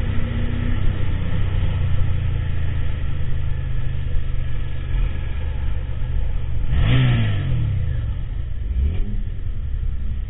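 Motorcycle engine running under way, a steady low engine note with road noise. About seven seconds in, a quick rev rises sharply in pitch and falls back over about a second.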